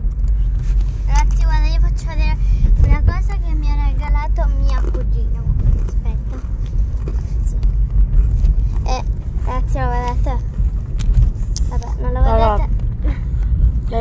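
Steady low rumble of a moving car heard from inside the cabin, with voices talking over it at intervals.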